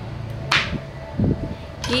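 Kitchen knife chopping pecans on a plastic cutting board: one sharp chop about half a second in, then a few softer knocks.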